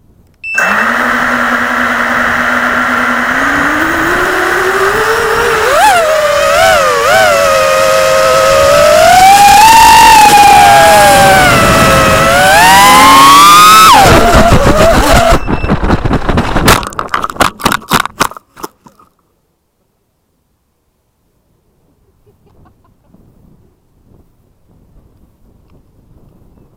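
Quadcopter's SunnySky 2207 brushless motors and props, recorded from the onboard camera, spinning up with a steady whine that rises in pitch, then climbing and falling in pitch with the throttle and loudest near full throttle. About fourteen seconds in, the whine breaks into irregular stuttering pulses as a component fails under full throttle (the owner suspects an ESC) and the quad spins out of control. The sound cuts off about nineteen seconds in, leaving near silence.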